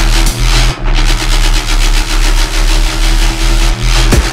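Heavy electronic dubstep music: a dense, distorted, engine-like bass-synth passage over a sustained deep bass, with loudness pulsing in regular dips and few clear drum hits.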